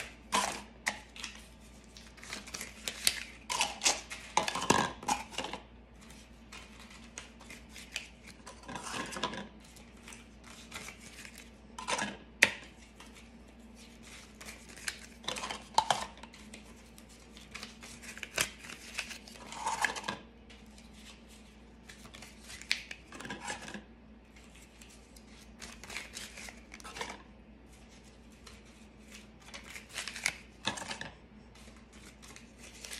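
Small black plastic cauldron buckets clicking and knocking on a wooden table as folded paper bills are tucked into them one at a time, in short irregular clusters of clatter every couple of seconds.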